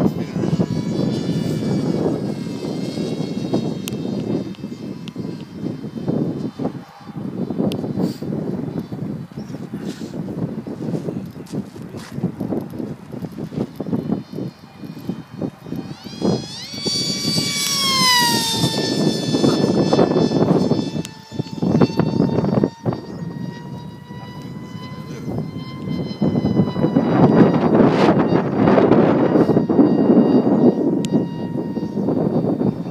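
Electric motor and pusher propeller of a Multiplex Funjet Ultra model jet whining high overhead. About 16 seconds in the whine swoops up and then drops in pitch as the plane passes close. Wind rumbles on the microphone underneath and grows louder near the end.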